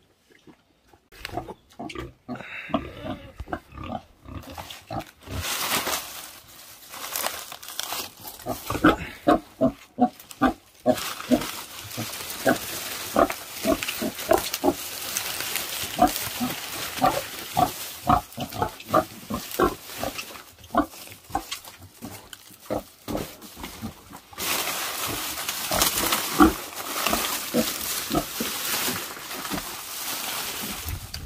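Pigs, a sow with her newborn piglets, grunting and squealing in a fast run of short calls, several a second, starting a couple of seconds in. A rustling, crackling noise of dry leaves runs behind them and is loudest near the end.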